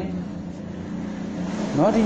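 A pause in a man's narration, filled by a steady low hum; the voice starts again near the end.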